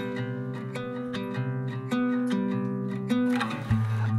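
Background music of gently plucked acoustic guitar, with notes picked one after another over held chords.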